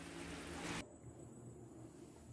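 Faint steady hiss that cuts off abruptly under a second in, leaving near-silent room tone.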